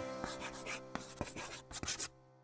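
Felt-tip marker scratching across a white board as a word is handwritten, in a quick run of short strokes that stops abruptly at the end. Held background-music notes fade underneath.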